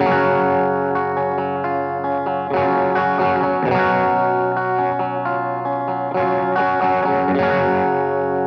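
Fender Stratocaster played through the Bass Instrument channel of a blackface Fender Bassman 50-watt tube head. It plays ringing chords, with a new chord struck every second or so, and the playing begins abruptly right at the start.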